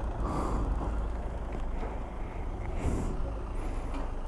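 Yamaha R1 inline-four motorcycle engine running low and steady while the bike rolls slowly, with two short hisses about half a second in and near the end.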